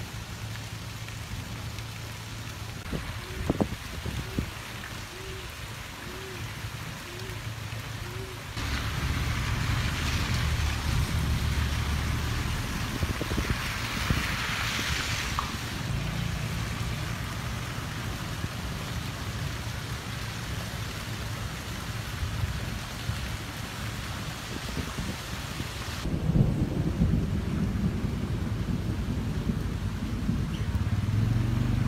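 Steady rain falling on standing flood water, with a low rumble of wind on the microphone. The level jumps abruptly about eight seconds in and shifts again near the end.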